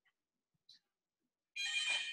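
A short electronic chime of several steady tones, like a phone ringtone or notification, starting suddenly about a second and a half in and lasting under a second, preceded by a few faint ticks.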